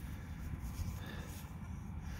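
Faint, unsteady low rumble of outdoor background noise, with no distinct event.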